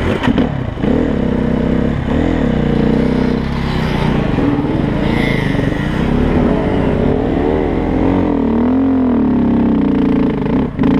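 KTM enduro dirt bike engine running under throttle as it pulls away and rides over rough grass, its pitch rising and falling with the revs.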